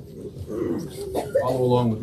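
A person's voice with a few indistinct words, louder in the second half.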